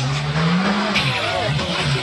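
Škoda Fabia rally car's engine revving hard on snow, its pitch climbing for nearly a second, dropping sharply, then holding and wavering, over a hiss of tyres on snow.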